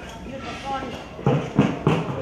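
Background chatter of several people's voices, with three loud, short knocks in quick succession in the second half.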